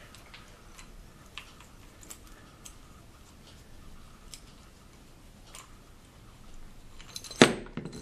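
Faint metallic ticks and clicks as a bolt is unscrewed by hand from a small homemade vise built from steel channel, then a louder metal clank near the end as the steel parts come apart.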